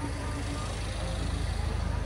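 Outdoor street noise: a steady low rumble with a hiss above it, growing slightly louder toward the end.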